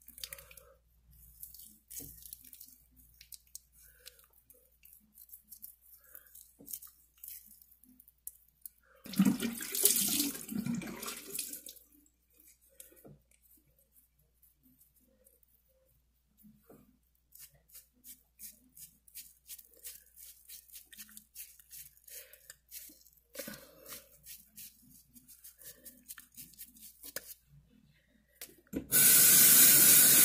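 Hands gently rubbing cleanser over wet facial skin, faint soft rubbing with many small clicks, and a louder burst of noise for a few seconds about a third of the way in. About a second before the end a bathroom tap is turned on and water runs steadily into the sink.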